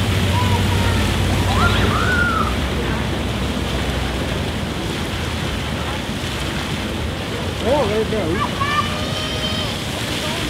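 Splash-pad fountain jets spraying and splashing water steadily on wet pavement. Children's high voices call out briefly about two seconds in and again near the end.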